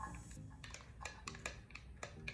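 A spoon scraping chopped onion out of a plastic bowl into a pot: a brief sliding scrape at the start, then a series of light taps and clicks of the spoon against the bowl.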